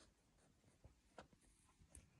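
Near silence, broken by a few faint clicks and short scratchy rustles of a pet rabbit shifting in the hay of its cage.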